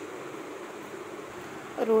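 Steady faint background hiss with no distinct sound events, typical room tone. A woman's voice starts speaking again near the end.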